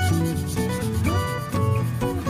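A hand nail file rubbing back and forth on an artificial nail tip, over background guitar music.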